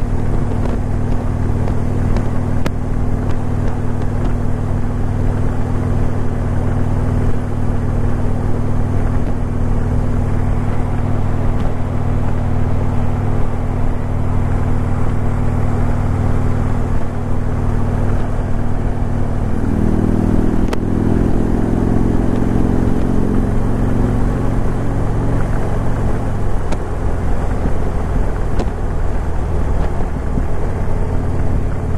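A 2015 Harley-Davidson FreeWheeler trike's V-twin engine running under way at cruising speed, heard from the rider's helmet with wind and road rush. About two-thirds of the way in, a higher engine note comes in and climbs for several seconds as the trike pulls harder, then settles back.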